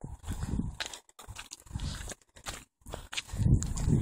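Wind buffeting a handheld phone's microphone while walking, heard as uneven low rumbles that come and go every half second or so, with brief cut-outs.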